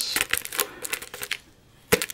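Foil tape and foil-faced Reflectix crinkling as the tape tabs are folded down and pressed flat by hand: a quick run of crackles that eases off about one and a half seconds in, then one sharp crackle near the end.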